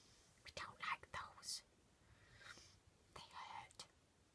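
A person whispering a few short words, faintly, in several brief phrases.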